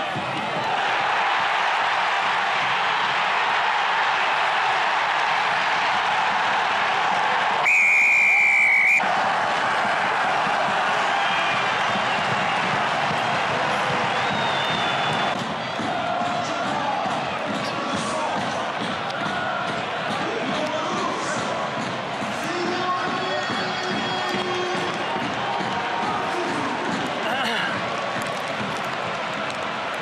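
Rugby stadium crowd noise throughout, with one blast of the referee's whistle about eight seconds in, lasting about a second and the loudest sound.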